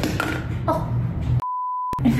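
A single steady, pure beep tone lasting about half a second near the end, with all other sound cut out around it, like an edited-in bleep. Before it, background music with snatches of a woman's speech.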